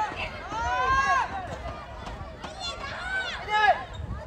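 Players shouting calls to each other during play, one drawn-out shout about half a second in and a run of louder shouts near the end, over open outdoor background noise.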